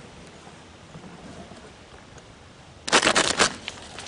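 Paper seed sack being handled and cut open: after a near-still start, a burst of crinkling and rustling paper about three seconds in.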